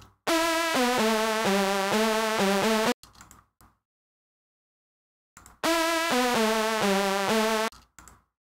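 A short, crunchy synth sample played back twice, each time a buzzy phrase of a few notes stepping down in pitch and then pulsing, with about three seconds of silence between. It is heard as mono through FL Studio's Fruity Stereo Shaper, its right channel isolated and sent to both sides.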